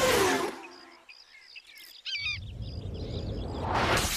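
A loud rushing sound fades out, leaving a moment of birds chirping. Then a low car rumble swells as a vehicle approaches at speed and ends in a loud rush as it passes.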